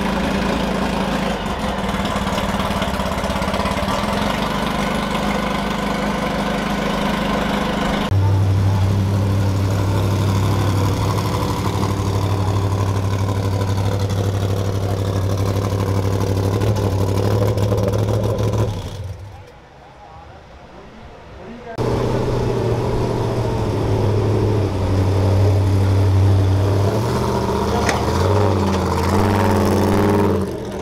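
Race vehicle engines idling steadily under crowd chatter, in several cuts that change the engine note abruptly; a much quieter gap of a few seconds comes about two-thirds of the way through.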